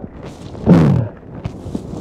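Wind buffeting the microphone, with crackle and several sharp low thumps. About two-thirds of a second in, a short falling vocal sound, like a hesitant "uh".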